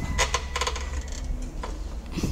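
Light metallic clinks from the steel frame and plate weight stack of a kneeling kickback gym machine as the user moves on it, several bunched in the first second and one more near the end.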